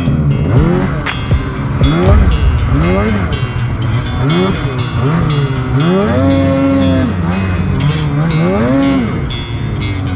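Two-stroke snowmobile engine being throttled through deep powder, its revs rising and falling in quick bursts about once a second, with one longer held rev about six seconds in.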